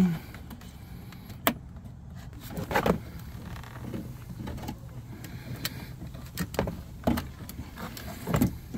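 Scattered sharp clicks and light knocks as the plastic retaining clips and metal linkage rods are worked off the inside door handle lever of a Jeep Grand Cherokee WJ's door panel, over a steady low hum.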